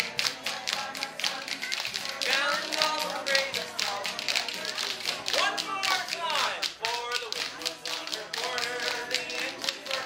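Several pairs of spoons played as a rhythm instrument by a group of children, a dense, uneven run of clicking taps, over acoustic guitar strumming.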